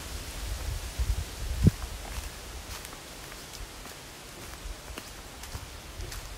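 Faint outdoor rustling under a low rumble on the microphone, with a few light crackles and one dull bump a little under two seconds in.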